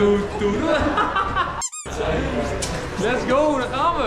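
Indistinct voices and laughter of a small group over a steady low hum, with a quick high squeak about halfway through, just as the sound briefly drops out.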